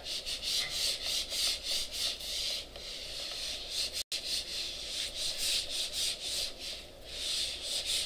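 Felt whiteboard eraser wiping marker off a whiteboard in quick, repeated back-and-forth strokes, a few each second.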